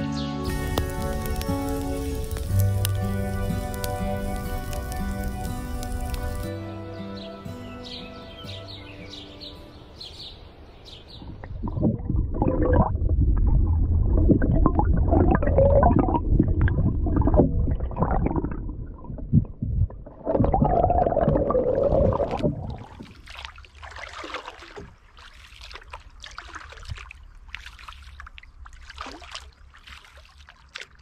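Instrumental music fades out over the first ten seconds. It gives way to loud underwater churning and gurgling as a paddle blade strokes through the water right by the microphone. Near the end come quieter scattered splashes and drips of paddling at the surface.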